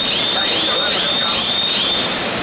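Loud, steady roar and hiss of foundry melting-shop machinery while stainless steel is being melted in the furnace. A high-pitched chirp repeats about three times a second over it and stops near the end.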